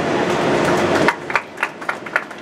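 A steady mechanical drone with a low hum cuts off suddenly about a second in, and scattered handclaps from a small group of people applauding follow.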